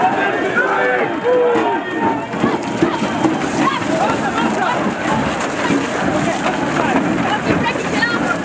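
Many voices shouting over one another, with boots tramping and shuffling on gravel as a line of riot-shield troops advances.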